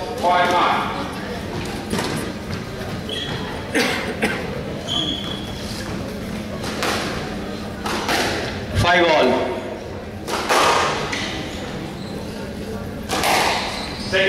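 Squash ball being struck and smacking off the court walls, sharp thwacks a second or several apart with a hall echo, over background voices.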